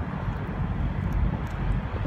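Steady low rumble of semi trucks running around a truck stop parking lot, with wind on the microphone.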